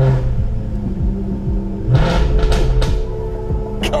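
Jaguar F-Type SVR's supercharged V8 starting up and flaring, then revved again about two seconds in, with music playing over it.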